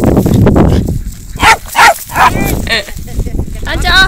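A dog barking: four short barks in quick succession, starting about a second and a half in, after a second of noisy rumble from wind and movement.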